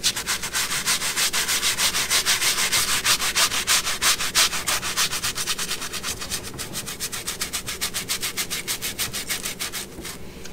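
Toothbrush bristles scrubbing the foamy fabric of a vehicle armrest in rapid, even back-and-forth strokes, working dirt out of the upholstery with cleaner.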